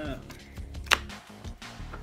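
A single sharp click about a second in, from game pieces being handled on the tabletop.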